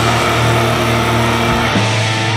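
Blackened death metal: distorted electric guitars holding sustained chords over a steady bass, shifting to a new chord near the end.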